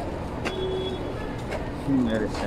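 Outdoor street-market ambience: a steady hum of road traffic with faint distant voices.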